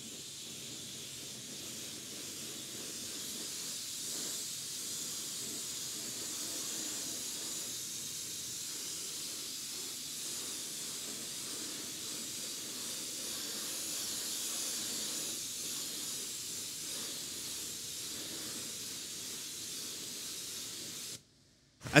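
High-pressure wash lance spraying a steady jet of water onto a car tyre and alloy wheel: a continuous hiss that stops abruptly near the end.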